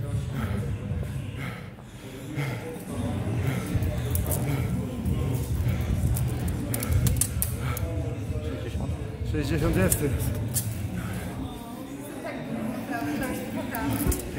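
Background voices and music, with a few sharp clicks or knocks.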